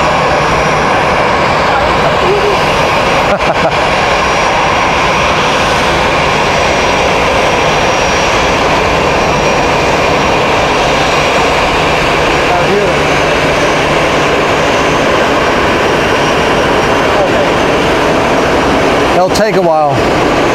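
Jet airliner engines running loudly at the airport, a steady noise with a faint high whine through the middle of it.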